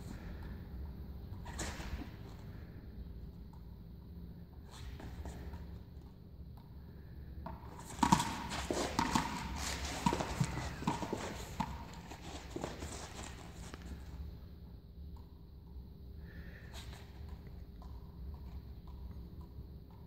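Quick footsteps and knocks on a hard floor, a dense run of taps lasting several seconds near the middle, as someone runs across a room. Around them, a quiet room with a few single soft taps from small juggling balls being caught.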